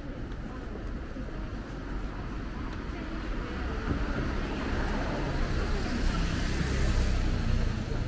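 City street traffic: a car drives past close by, its tyre and engine noise swelling over the second half and loudest near the end before easing off, with voices of people on the footpath.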